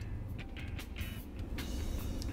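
A man drinking water from a glass, a few faint swallowing clicks over a low, steady hum of background music.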